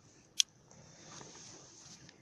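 A single sharp click of a switch being flipped on about half a second in, switching a 24-volt bulb onto a homemade solar panel as its load, followed by faint background hiss.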